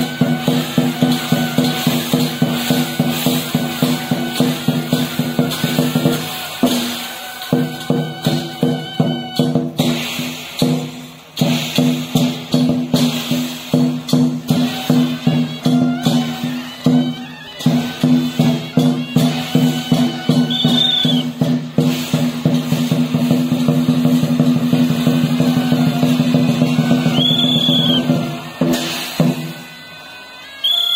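Rhythmic percussion music for a dragon dance, with a fast steady beat of several strokes a second over a sustained ringing tone. The beat drops out briefly a few times and fades near the end.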